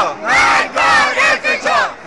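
A street crowd of protesters chanting a slogan in Persian in unison, loud shouted phrases with short breaks between them.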